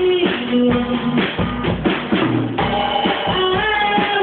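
A band playing a song, with a drum kit's bass drum and snare keeping the beat under held, gliding melody notes.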